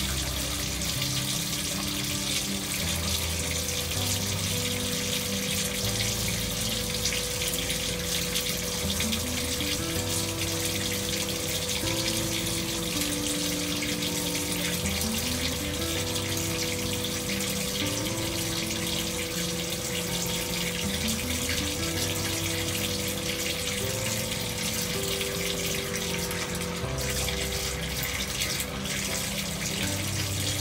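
Tap water running at full pressure from a bathtub spout into the tub, a steady even rush and splash. Gentle, slow background music with long held notes plays under it.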